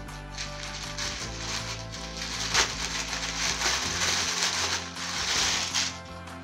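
Plastic packaging rustling and crinkling as a blouse is unwrapped and pulled out, with a sharp crackle about two and a half seconds in and the loudest rustling near the end. Background music plays under it.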